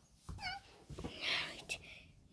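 A short, high-pitched squeaky voice like a small animal's cry about half a second in, then a breathy, whispered hiss and a faint click near the end.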